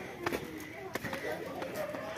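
Faint background voices of people talking, with a few light sharp taps.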